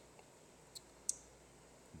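Two short clicks, the second sharper and louder, about a third of a second apart, over a near-silent background.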